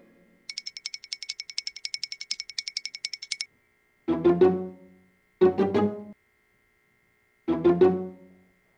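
A rapid ringing trill, about eleven strokes a second on a steady high pitch, starts about half a second in and cuts off after three seconds. Short groups of plucked pizzicato string chords follow, three times.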